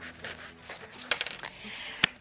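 A small glittery pouch being handled and opened: a quick run of sharp little clicks about a second in, then a soft rubbing.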